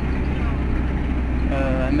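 Bus running, heard from inside the cabin as a low, steady rumble.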